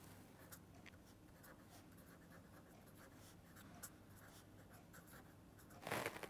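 Faint scratching of a pen writing on paper in short strokes, with a louder rustle of paper just before the end.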